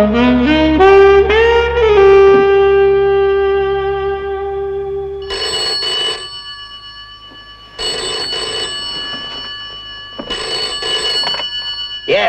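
A saxophone-led music sting plays with bending notes and ends on a long held note. Then a telephone bell rings three times, each ring about a second long.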